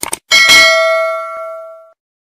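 Two quick mouse-click sound effects, then a bright bell ding with several ringing tones that fades out over about a second and a half: the notification-bell sound of an animated subscribe end screen.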